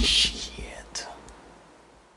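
A man whispering: a hissing whisper at the start and a second, fainter one about a second in, fading out.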